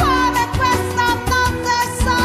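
A song: a singer holding long, wavering notes over a rhythmic Latin-style backing with bass and percussion.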